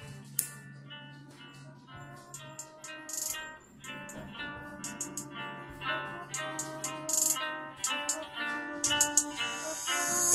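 Background music: an instrumental beat with a plucked, guitar-like melody over a steady low note, and short high ticks throughout.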